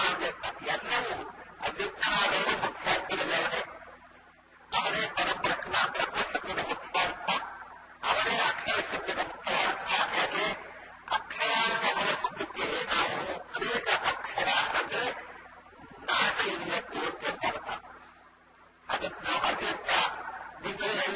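A man's voice speaking Kannada in phrases of a few seconds with short pauses, on a harsh, hissy, distorted recording.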